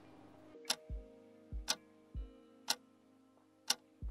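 Clock-ticking sound effect, one sharp tick a second, marking a one-minute timed hold, over soft background music with a few low thumps.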